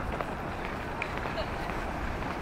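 Footsteps on pavement over a steady low rumble of city background noise, with faint, indistinct voices in the distance.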